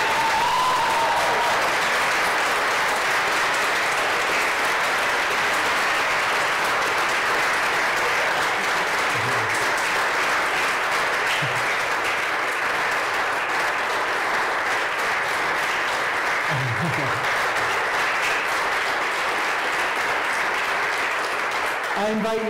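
Congregation applauding steadily for about twenty seconds, with a short high call from someone in the crowd near the start.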